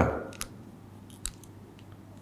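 A man's voice finishes a short spoken question, then quiet room tone with a few faint clicks and a soft thump about a second and a quarter in.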